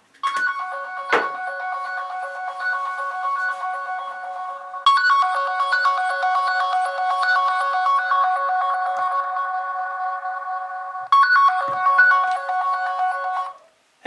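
Mobile phone ringing out on loudspeaker with a ringtone melody while a call connects. The melody goes in three stretches, jumping suddenly louder about five seconds in and again about eleven seconds in, and cuts off just before the call is answered.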